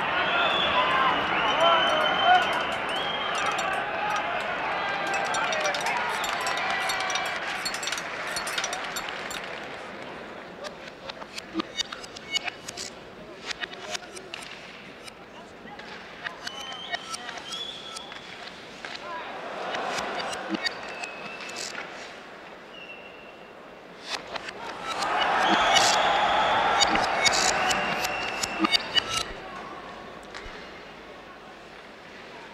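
Added film soundtrack of warbling, voice-like gliding tones over scattered clicks and pops. It is loud for the first eight seconds, thins out in the middle, and swells again a few seconds before the end.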